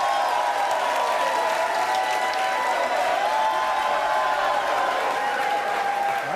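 Studio audience applauding and shouting as a guest comes on stage, with long held crowd voices over the clapping.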